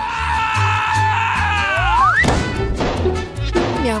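Background music with held tones; about two seconds in, a rising whistle leads into a loud burst and a noisy rush lasting over a second: an explosion sound effect for a giant bubblegum bubble bursting.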